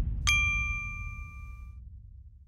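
A single bright bell-like ding, struck about a quarter second in and ringing for about a second and a half, as the low rumble of the closing music fades away.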